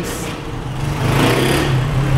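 A car driving past close by: engine hum and tyre noise that grow louder about halfway through.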